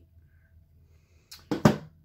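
A brief clatter of handling: two or three sharp knocks in quick succession about a second and a half in, the last one the loudest.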